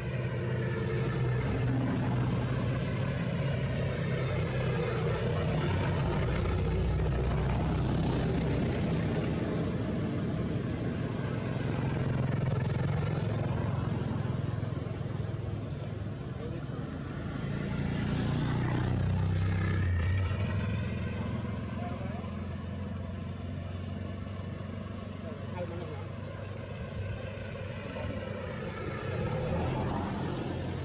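Motor vehicle engines running steadily, growing louder a few times as vehicles pass by, with one passing engine's pitch sliding downward near the end of a swell.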